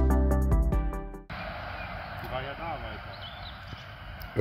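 Electronic background music with a steady beat, cut off about a second in. Then quiet outdoor ambience follows, with a faint distant voice briefly.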